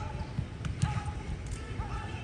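Training-pitch sound: dull thuds of footballs being kicked and bouncing, with short shouted calls from players.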